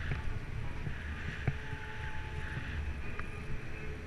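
Wind rushing over the camera microphone and the low rumble of a bicycle rolling on asphalt, with a few sharp clicks or knocks, the loudest about a second and a half in.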